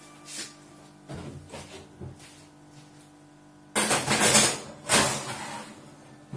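Metal baking tray going into an oven and the oven door shutting: a scraping clatter about four seconds in and a short bang about a second later, with a few light knocks before, over faint background music.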